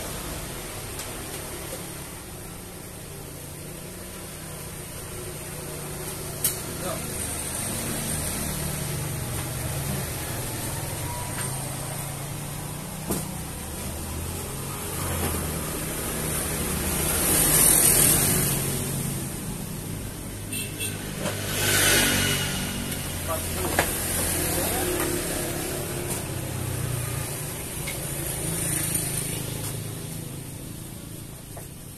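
Road vehicles passing nearby, a steady low rumble that swells loudest twice, about two-thirds of the way through, with a few sharp clicks.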